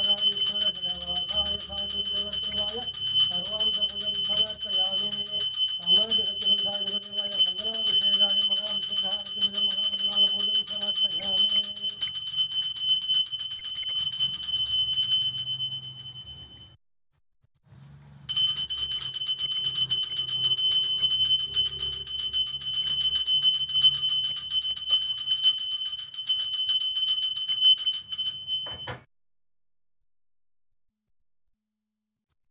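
Small hand bell rung rapidly and continuously for aarti, a bright high ringing with a fast clatter of strikes. It breaks off briefly about halfway, resumes, and stops just before the end. A person's voice sounds under it during the first part.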